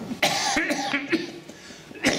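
A man coughing while laughing: a sharp cough about a quarter of a second in, then broken voiced sounds, and another cough starting at the very end.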